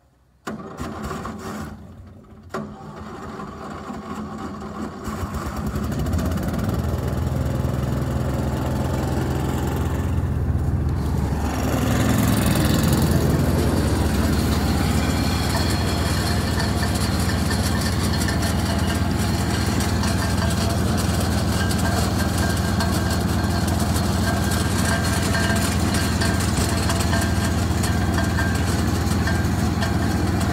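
Pecan cleaner starting up: its engine catches about half a second in, falters briefly, then builds over several seconds to a steady run and steps up once more before midway. It drives the elevator conveyor and the air-leg fan that blows light, empty nuts, shucks and leaves out of the pecans.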